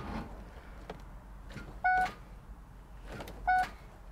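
Car's dashboard warning chime sounding two short beeps, about 2 s and 3.5 s in, with a few faint clicks from the driver's controls in between; the car's battery is flat and needs a jump-start.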